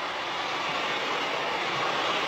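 A steady, even hiss of background noise, with no voice and no distinct events.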